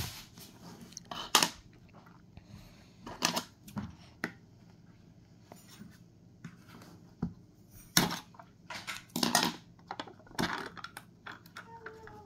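Scissor point stabbing and tearing through the foil seal on a plastic slime jar: a handful of short, sharp crackles and scrapes spaced irregularly a second or more apart, with foil crinkling as it is torn.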